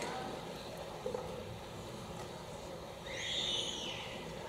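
Quiet room tone of a large hall in a pause between speakers. Near the end comes a brief, faint high hiss lasting under a second.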